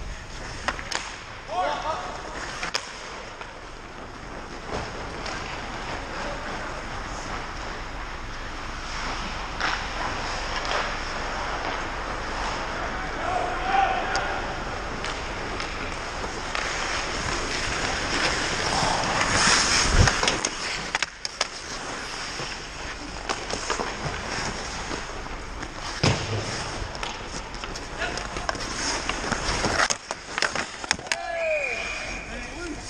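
Ice hockey play on an indoor rink: skate blades scraping and carving the ice, with scattered stick and puck clacks. One sharp knock about twenty seconds in is the loudest sound.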